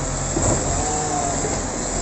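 Side-loader garbage truck's engine running at idle: a steady low hum with a noise haze over it.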